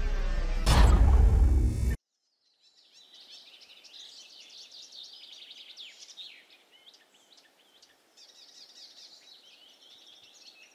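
A loud music hit with a deep boom cuts off suddenly about two seconds in. After a moment of silence, many birds chirp in quick, short calls that rise and fall, over a faint outdoor hush.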